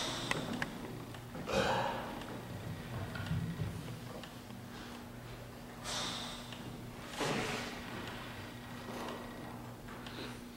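Quiet church room tone with a steady low electrical hum, broken by a few short breathy noises about one and a half, six and seven seconds in, and a few soft clicks at the start.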